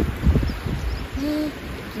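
One short, low hooting note about a second in, over wind buffeting the microphone.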